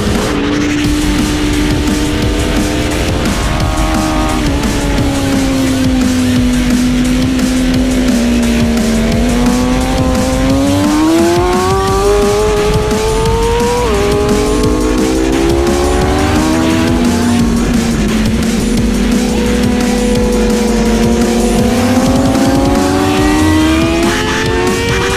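Superbike engine running at high revs on a race track, its pitch climbing under acceleration and falling off under braking, with a sudden drop at a gear change about fourteen seconds in. Music plays underneath.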